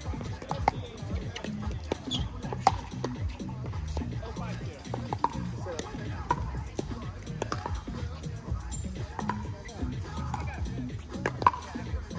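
Pickleball paddles striking a plastic ball: sharp hollow pops scattered through, the loudest about a third of the way in and again near the end. Music and distant voices run underneath.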